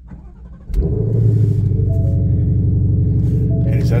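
Ford Mustang Shelby GT500's supercharged 5.2-litre V8 starting up about a second in, then running at a steady, loud idle. A few short, higher steady tones sound over it.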